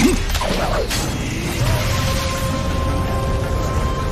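Sound effects for an animated battle: a sharp hit at the start, then dense mechanical whirring and low rumbling, with a steady held tone coming in about halfway through, mixed with music.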